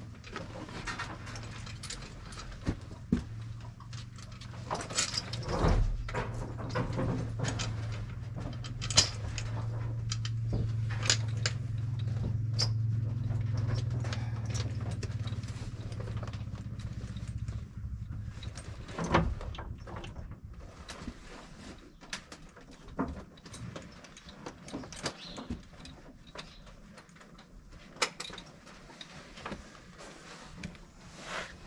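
Draft-horse harness hardware (buckles, rings and hames fittings) clinking and knocking at irregular intervals as the harness is fitted and adjusted on the horse. A low steady hum runs underneath from about four seconds in until about nineteen seconds in.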